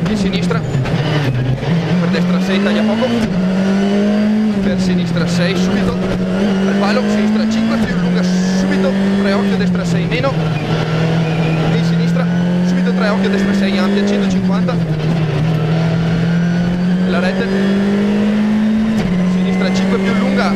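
Škoda Fabia R5 rally car's turbocharged 1.6-litre four-cylinder engine under hard acceleration, heard from inside the cockpit. Its pitch climbs through each gear and drops sharply at every shift, over and over as the car is driven flat out.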